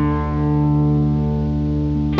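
Instrumental blues guitar: a chord held and ringing out, with a fresh note sounding in right at the start.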